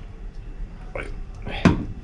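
Metal spoon working a spoonful of coconut oil into a glass mixing bowl: quiet scraping, with a short knock about a second in and a sharper, louder one near the end.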